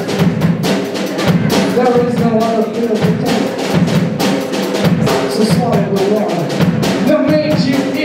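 Live rock band playing an instrumental passage: a drum kit keeps a steady beat under electric guitars and bass guitar.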